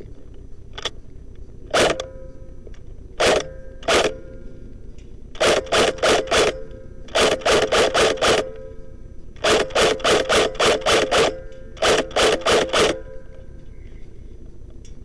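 Airsoft G36 rifle firing: three separate shots early on, then four quick strings of about five to eight shots each, fired at roughly four shots a second.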